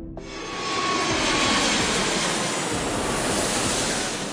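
Sound effect of a jet airliner passing: a rushing noise that swells in over the first second, holds steady, and fades toward the end.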